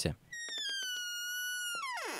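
A long, high-pitched creak of a door hinge that slowly sinks in pitch, with faint clicks running through it, then slides steeply down near the end as the door swings shut.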